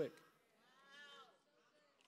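A faint, drawn-out vocal call from the audience, rising and then falling in pitch, about a second in.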